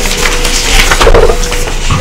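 Paper handouts rustling and crackling as they are handled and passed around, with a few soft knocks.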